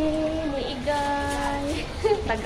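A woman's voice holding one long sung note that falls slightly in pitch and stops near the end.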